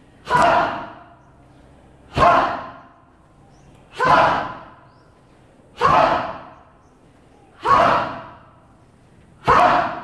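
A group of people doing the sumo wrestlers' stomp exercise, each time bringing a raised leg down to stamp on the floor and shouting "Ha!" together. Six stomps with shouts, evenly spaced about two seconds apart.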